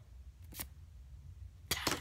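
Quiet pause with a steady low rumble and a few faint clicks, one a little past half a second in and a short cluster near the end, from Pokémon trading cards being handled.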